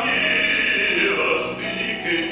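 Male operatic bass voice singing a Russian romance, holding a long wavering note that breaks for a brief hissed consonant about one and a half seconds in before the next note begins.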